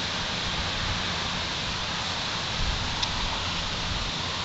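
Steady, even background hiss with a faint low hum and no distinct events: room or recording noise.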